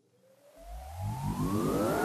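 Electronic riser sound effect: a rush of noise with several tones gliding steadily upward, building from near silence about half a second in, with a low rumble underneath.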